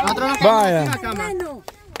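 A man's voice calling out in one long cry that falls in pitch, with a few sharp hand claps.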